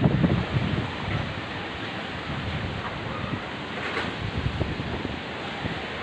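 Steady wind noise, with the wind buffeting the phone's microphone.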